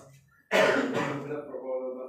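A man's voice: after a brief near-silent pause, a sudden loud, rough vocal sound like a throat clearing about half a second in, running straight on into continued voiced sound.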